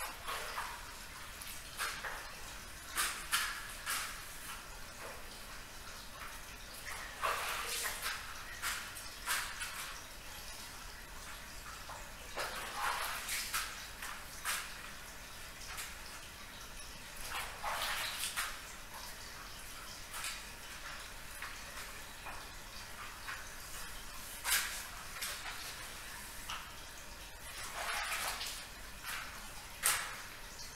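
Floor being wet-mopped by hand: irregular swishing strokes a few seconds apart.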